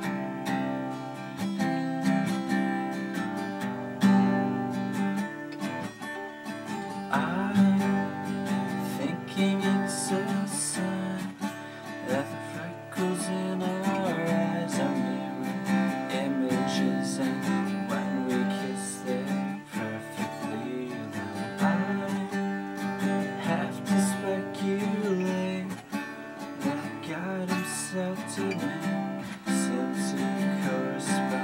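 Acoustic guitar played quietly in steady strummed chords, with a male voice singing softly over it from about seven seconds in.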